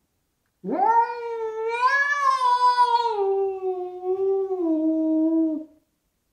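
Orange tabby house cat giving one long, drawn-out yowl of about five seconds, a territorial warning at a rival cat. The pitch climbs sharply at the onset, then sinks slowly, stepping down near the end before it cuts off.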